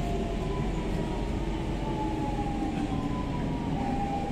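SMRT C651 train braking into a station, heard from inside the carriage: a steady running rumble with a faint traction-motor whine that slowly falls in pitch as the train slows. In this car the regenerative braking seems not to be working, giving a softer deceleration than normal.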